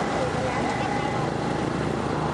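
Wind rushing over the microphone of a moving motorbike, with the bike's engine and road noise underneath. A faint steady tone runs through most of it.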